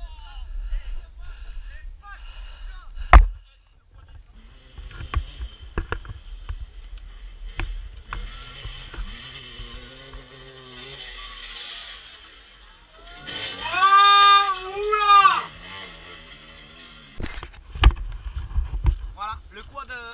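Two-stroke off-road engines revving in bursts, loudest about two thirds of the way through. A steady low rumble of wind or handling runs on the microphone, and there is one loud knock about three seconds in.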